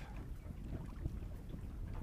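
Wind buffeting the microphone on an open boat: a steady low rumble.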